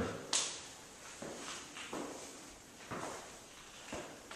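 Faint footsteps on a tile floor, a soft step about once a second, with a sharper click just after the start.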